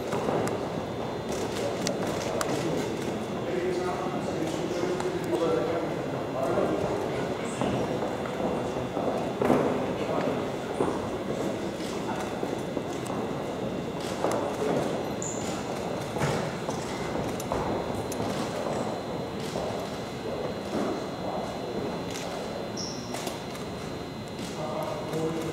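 Murmur of many voices in a large room, with scattered clicks of camera shutters from photographers shooting a posed face-off.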